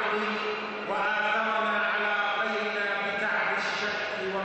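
A man's voice amplified through a podium microphone, declaiming in Arabic in drawn-out, chant-like phrases, one note held steadily for about two seconds.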